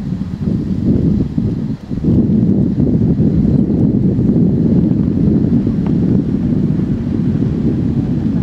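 Wind buffeting the microphone outdoors: a loud, steady low rumble that dips briefly and then holds even from about two seconds in.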